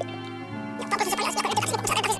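Cartoon soundtrack music of sustained organ-like chords. About a second in, a rapid, fluttering, noisy cartoon sound effect breaks in over the music for about a second and is the loudest thing heard.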